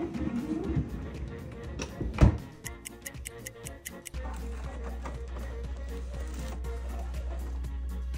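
Background music, with one loud thump about two seconds in; from about four seconds a steady low hum runs under the music.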